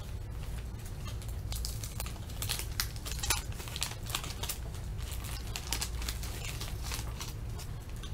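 Wax-paper wrapper of a 1979 Topps baseball card pack being peeled open by hand: irregular crinkling and crackling throughout, over a steady low hum.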